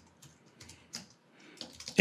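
Computer keyboard being typed on: an irregular run of key clicks.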